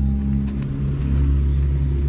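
A steady low drone of a running motor, with a couple of light knocks.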